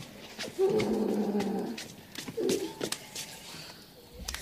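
A dog making a short vocal sound lasting about a second, then a briefer one a second later, with a few faint clicks and knocks around it.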